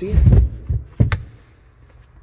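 Carpeted cargo-floor panels of a Nissan Rogue being handled: a low bumping rumble in the first half-second, then one sharp knock about a second in.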